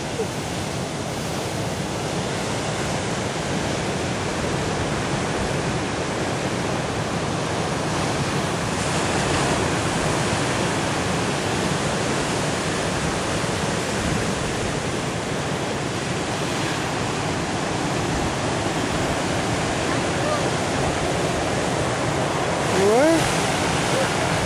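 Heavy surf breaking and washing up a pebble beach: a steady rush of foaming waves.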